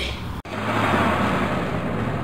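A truck engine running steadily with a low hum, cutting in abruptly about half a second in.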